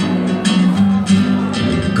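Acoustic guitar playing a short instrumental passage between sung lines of a slow pop song, with several notes picked over sustained chords.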